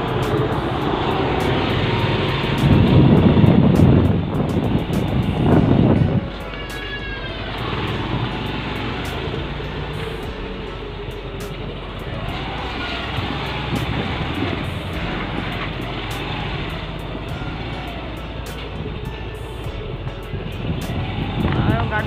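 Motor scooter riding along a street, its small engine running under a continuous rush of wind on the microphone, with two loud rushing surges a few seconds in.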